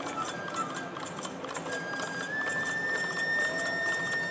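Traditional Japanese festival music for a shishimai lion dance: a long held high melodic note that steps up slightly about two seconds in, over a fast, even clinking rhythm, with the drums played softly.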